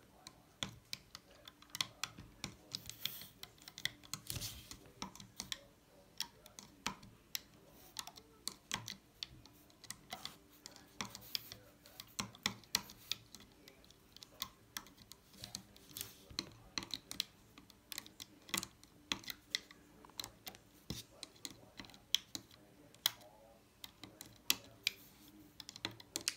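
Rainbow Loom hook and rubber bands clicking against the plastic pegs as the bands are hooked and pulled up, irregular light clicks a couple of times a second.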